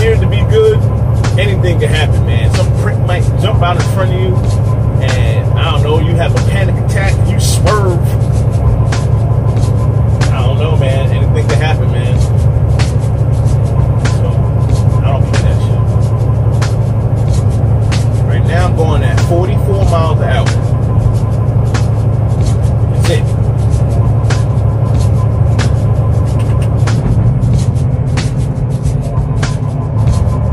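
Steady low drone of a semi-truck's engine and road noise heard inside the cab while cruising downhill, with music and a singing voice playing over it and frequent light clicks and rattles.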